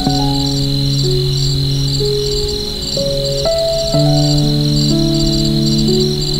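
Soft piano music of slow, sustained notes and chords, with crickets chirping steadily behind it in short, evenly repeated pulses, about two to three a second.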